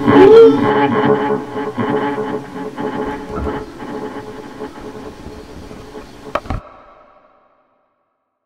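Improvised noise music fading out: a dense drone of steady pitched tones, with the tail of a wailing voice at the start, dies away over several seconds. Two sharp knocks come near the end, then the sound cuts off with a brief ringing tail.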